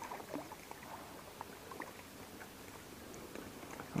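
Faint light splashing with small scattered clicks and rustles as a hooked bullhead is reeled in to the shore and lifted from the water.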